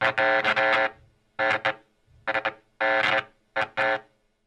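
Short electronic music sting for a segment transition: a pitched synthesized tone that stutters in five bursts, the first about a second long and the rest shorter, each cut off abruptly with gaps between.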